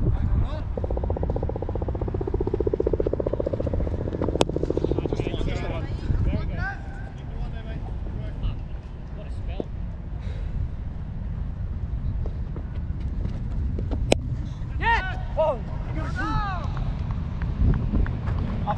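Low wind rumble on a chest-mounted action camera's microphone, with a sharp crack about fourteen seconds in as a cricket bat strikes the ball, followed by distant shouts from the players.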